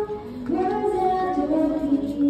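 Music with a woman's voice singing a slow melody in long held notes.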